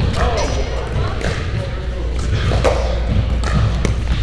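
Pickleball paddles striking the hard plastic ball during a rally, a few sharp pops spaced a second or so apart, echoing in a large indoor hall.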